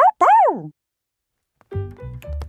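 A cartoon puppy's two short barks, each sliding up in pitch and then falling. After a pause, children's music with a bass line and keyboard notes starts near the end.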